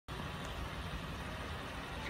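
Steady, fairly quiet outdoor background noise, mostly a low rumble with a faint even hiss above it.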